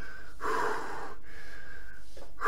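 A man's heavy breath, one long gasping exhale about half a second in, winded from punching a bag.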